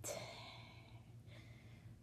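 A woman's faint breathing close to the microphone: a breath at the start that fades over about a second, then a shorter breath about a second and a half in.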